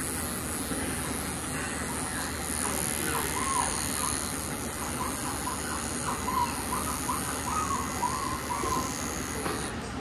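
Electric dog grooming clipper running steadily as it trims hair along a Scottish Terrier's ear, then switched off near the end.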